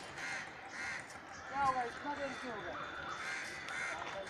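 Crows cawing repeatedly in the trees, with a faint voice partway through.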